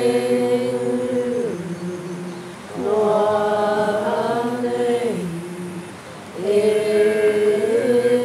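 Voices chanting a Māori waiata in long held notes, in phrases that each end with a downward glide; a new phrase begins near three seconds in and another after six seconds.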